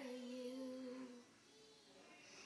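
A young girl singing without words, holding one steady note for about a second before her voice drops away, with a faint short note after.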